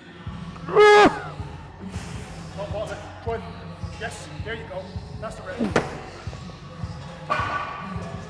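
A man's loud, strained shout of effort about a second in, followed by shorter grunts, over background music with a steady beat.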